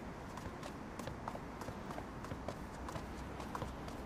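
Brisk footsteps, about three to four steps a second, each a short sharp click, over a faint low background hum.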